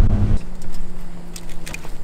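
Hyundai Veloster Turbo driving on a sandy dirt road, heard from inside the cabin as a loud low rumble, cuts off about half a second in. Then comes a much quieter steady low hum of the parked car idling, with a few faint clicks.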